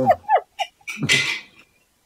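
People laughing on a group video call: a few short high-pitched vocal bursts, then a loud breathy burst about a second in.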